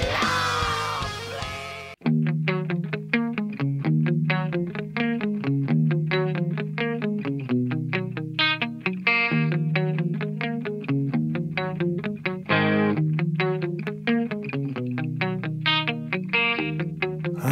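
A heavy metal track ends on a ringing guitar chord that fades to a brief silence about two seconds in; then an electric guitar starts picking a quick, evenly spaced pattern of single notes, with no vocals.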